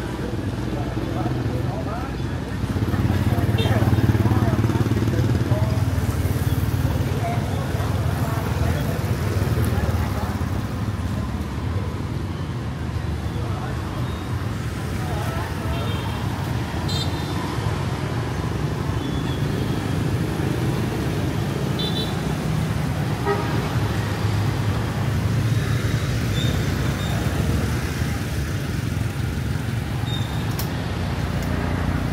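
Busy street traffic, mostly motorbikes, with engines passing close and a few short horn toots. Voices of passers-by mix in.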